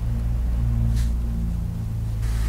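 Low steady hum with a faint click about a second in.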